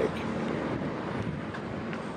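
Steady rushing of wind on the microphone outdoors, with no clear pitched or sudden sound in it.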